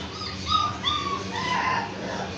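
A young pet animal crying: a string of about half a dozen short, high-pitched whimpering calls.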